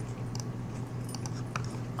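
Faint, scattered clicks of a computer mouse and keyboard as a value is typed in, over a steady low electrical hum.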